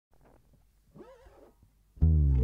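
Near silence: room tone, with one faint short sound sliding up and down in pitch about a second in.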